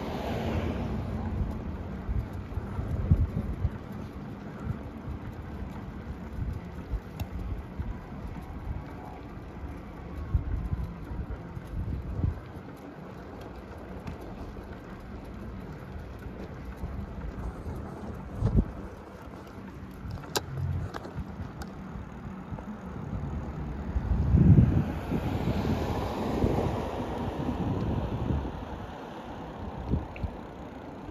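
Wind buffeting the microphone of a moving bicycle, a fluctuating low rumble with occasional bumps. A motor vehicle passes close by at the start, and a louder swell of noise comes about 24 seconds in.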